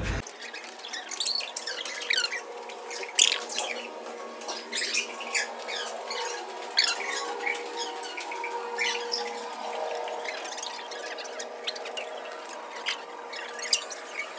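Rubber-soled sneakers squeaking on a polished hallway floor: many short, high squeaks at irregular intervals over a steady hum.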